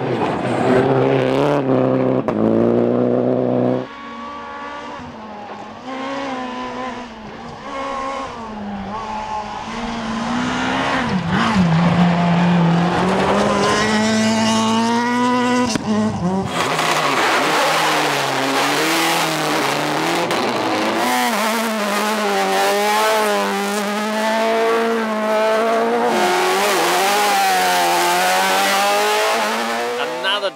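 Rally cars driven hard on gravel stages: engines revving up and dropping back with each gear change as the cars pass. The sound changes abruptly a few times as one car gives way to another, and the second half is louder and noisier.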